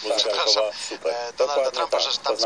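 Speech only: a man talking in a radio broadcast.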